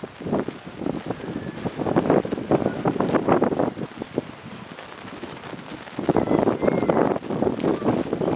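Wind buffeting the camera microphone in two gusts, a rough crackling rush that swells about two seconds in and again near the end.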